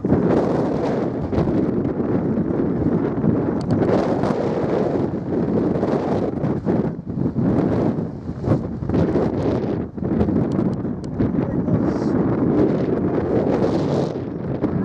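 Wind buffeting the camera's microphone: a continuous rushing rumble, with a brief dip about ten seconds in.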